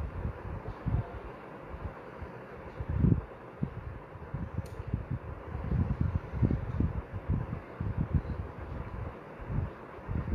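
Air buffeting the microphone in an irregular low rumble over a steady hiss, with a single sharp click about halfway through.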